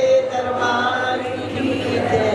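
A woman singing a Hindi devotional bhajan into a microphone, drawing out long held notes.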